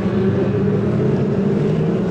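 A pack of Formula 2 stock car engines racing round the oval, a steady, even drone of many engines together.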